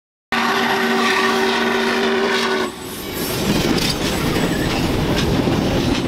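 A locomotive whistle sounds a chord for about two seconds, starting suddenly, then cuts off. After it, railroad cars roll past with a steady rumble and the clatter of wheels on the rail joints.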